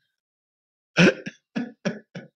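A man laughing: a sharp, cough-like burst of laughter starting about a second in, followed by a few short chuckles that fade.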